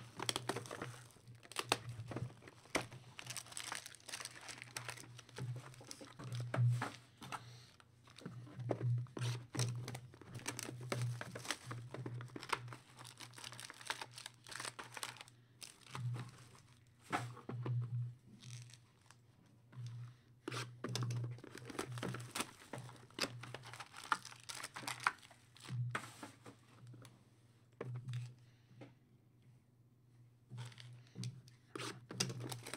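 Plastic wrapping and wrapped trading-card packs crinkling and rustling as a sealed card box is opened and its packs handled and set down on the table, in irregular rustles with occasional tearing.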